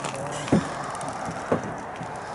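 Footsteps on packed snow over river ice: two short thuds about a second apart, over a steady outdoor hiss.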